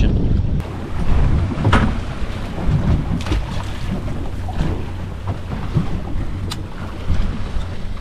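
Wind buffeting the microphone and water washing against the hull of a drifting fishing boat on a choppy sea. A single sharp noise stands out about two seconds in.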